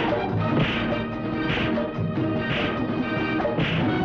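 Film soundtrack music with five sharp, crash-like hits, about one a second.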